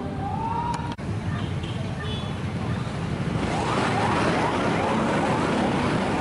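Road traffic with vehicle engines running. From about three and a half seconds in, a siren sounds a run of quick, repeated rising sweeps over it.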